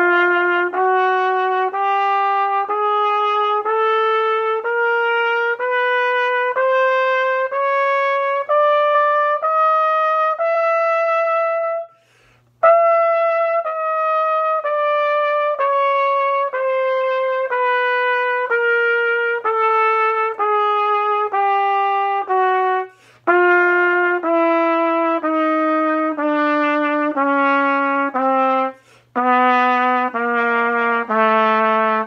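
B-flat trumpet playing a chromatic scale in even quarter notes, rising a semitone at a time to the top note (written F sharp in the staff), held about 11 seconds in, then descending chromatically. Short breath breaks come about 12, 23 and 29 seconds in.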